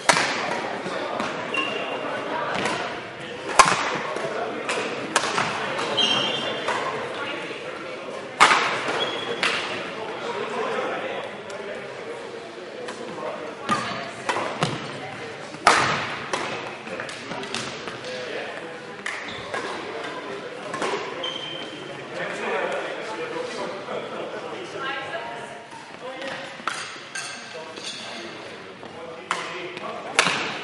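Badminton rackets cracking against a shuttlecock through a rally, a handful of sharp strokes standing out above the rest, with brief high squeaks of shoes on the court floor. A murmur of indistinct voices echoes through the hall.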